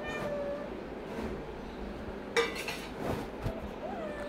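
Domestic cat meowing while it paces about looking for food: a short meow at the start and a rising-and-falling meow near the end. A single sharp click about halfway through is the loudest sound.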